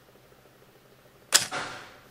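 Canon AE-1's cloth focal-plane shutter closing and mirror returning at the end of a two-second exposure: one sharp clack about a second and a half in, with a short ringing tail, after a quiet stretch. The mechanism fires without the squeal typical of these cameras.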